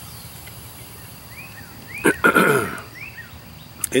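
A man clears his throat once, about two seconds in, against quiet outdoor background with a few short bird chirps around it.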